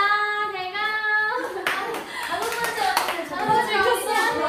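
A young woman's voice holding one long, slightly wavering note for about the first second and a half, then hand clapping mixed with several women's voices.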